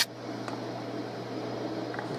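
A steady low hum with faint background noise, opened by a brief burst of noise right at the start.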